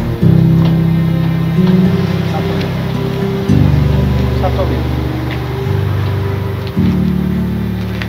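Background music of held low bass notes that shift to a new chord every second or two, with faint talk underneath.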